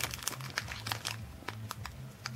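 Thin clear plastic bag crinkling as it is turned and squeezed between the fingers: a quick, irregular run of small sharp crackles.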